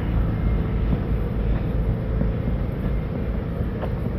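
Steady low rumble with an even hiss above it and no distinct events.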